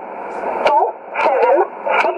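The E11 'Oblique' numbers station reading out digits in English, heard over shortwave in single sideband. The voice comes through a narrow, tinny radio band with a constant hiss and sharp static clicks.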